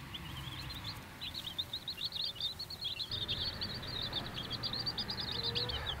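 A brood of baby chicks peeping: many short, high cheeps overlapping, getting busier about a second and a half in.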